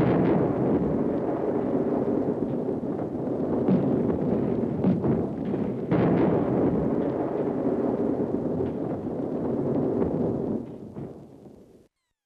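A dense rumble of explosions and gunfire with scattered sharp bangs, swelling anew at the start and again about six seconds in, then fading out near the end.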